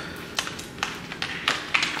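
Several light taps and clicks of hard objects being handled, spaced irregularly.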